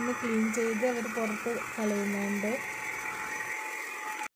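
Handheld vacuum cleaner running steadily while cleaning a car's floor. A voice is heard over it for the first two and a half seconds.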